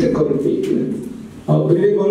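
A man speaking, with a short pause about one and a half seconds in.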